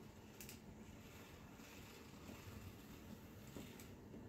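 Near silence: faint room tone with a few soft clicks, one about half a second in and two near the end.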